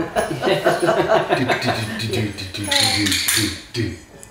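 Several people talking and laughing over one another, with no clear words, and a few light knocks among the voices.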